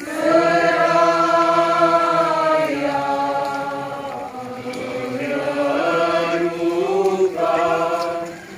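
A crowd of people singing a slow hymn together, long held notes in phrases a few seconds long.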